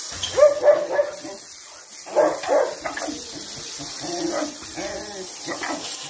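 Dogs barking in a kennel run: loud barks about half a second in and again about two seconds in, then quieter barking, over a steady hiss.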